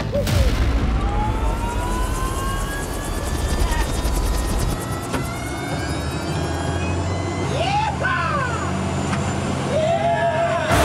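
Helicopter running, with a whine that rises steadily in pitch over the first few seconds. A short voice breaks in about eight seconds in.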